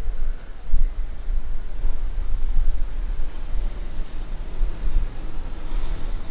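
City street traffic noise: a steady, uneven low rumble of car engines and road noise.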